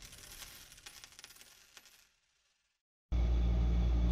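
Coins clinking and jingling, a quick run of small metallic clicks that fades away by about halfway. After a moment of silence, a steady low hum of room noise starts near the end.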